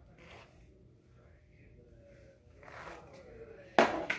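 Mostly quiet room with a few faint, soft rustles of hands in hair. Near the end a girl's voice starts, much louder.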